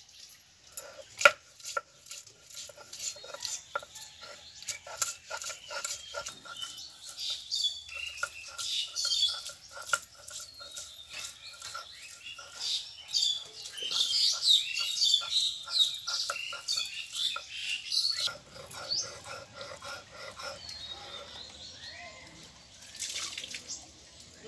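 Knife slicing okra on a wooden chopping board: a quick run of sharp taps, about two to three a second, that thins out in the last few seconds. Birds chirp in the background through the middle of the run.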